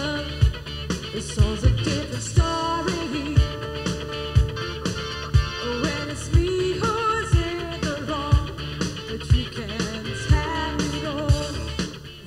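Live rock band playing: electric guitars, bass and drums, with a kick drum beat about once a second and singing over it.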